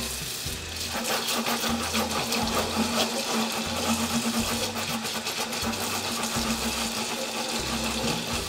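Kitchen tap water running and splashing onto a barbecue grill grate in a stainless steel sink while the grate is scrubbed with a sponge.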